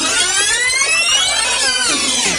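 A rewind transition sound effect: a loud whirring sweep whose pitch climbs steeply, holds, and then drops back down near the end, like audio spun up to high speed and let run down.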